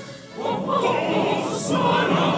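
Choir singing with orchestral accompaniment, in a classical mass setting. After a brief dip at the start, the full choir comes back in about half a second in and holds its chords.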